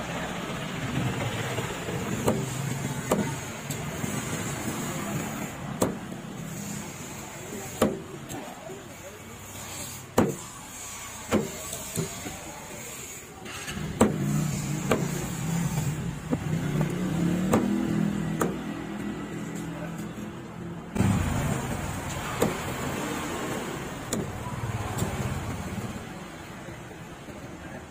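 A large knife chopping through rosy snapper into steaks on a wooden chopping block: sharp knocks, one every second or two. Underneath runs a steady engine hum that swells for several seconds past the middle.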